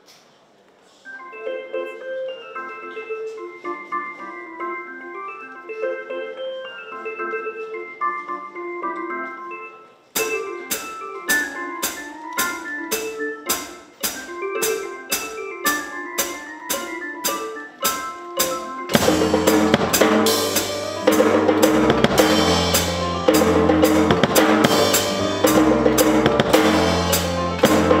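Drum kit played along with a pitched melodic backing track. The melody plays alone at first. About ten seconds in, the drums join with a steady beat of even strokes. Near the twenty-second mark a bass line and fuller accompaniment come in and the music grows louder.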